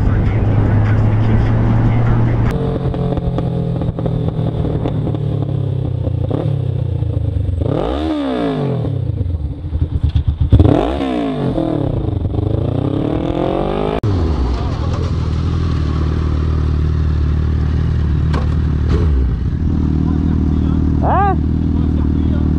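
Motorcycle engines heard from the rider's on-bike camera, running steadily. The revs rise and fall sharply several times in the middle, then settle back to a steady cruise.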